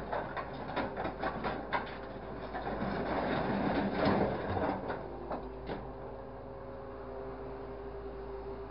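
Scrap metal clattering as a hydraulic grapple drops it into a steel truck bin, a dense run of knocks and rattles that peaks in the middle. The clatter dies away about six seconds in, leaving a steady machine hum.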